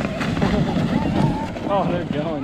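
Wind buffeting the microphone, a loud, steady low rumble, with distant voices and a short shout of "oh" near the end.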